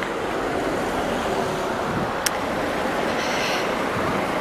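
Road traffic: a car passing on the road alongside, a steady rush of engine and tyre noise. One sharp click a little over two seconds in.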